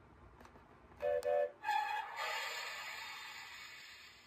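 Talking Nia toy engine (Thomas & Friends, 2024) playing its electronic sound effects through its small speaker: a short two-note whistle about a second in, a higher whistle note, then a hiss that fades away.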